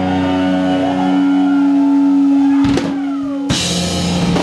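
Live heavy rock band: a loud, distorted guitar and bass chord is held and rings on, then slides down in pitch. Drum hits and cymbal crashes come about two thirds of the way in, with a louder cymbal crash washing over the last half second, typical of a song ending.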